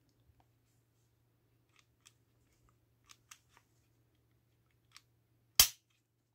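Polymer80 PFC9 pistol's trigger and action being worked unloaded: a few faint ticks, then one sharp metallic click about five and a half seconds in.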